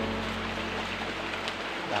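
Background music of held low chords over a steady rushing hiss.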